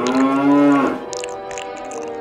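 A dinosaur creature's call: one loud, drawn-out cry just under a second long, its pitch arching slightly and then falling away. It sounds over steady background music.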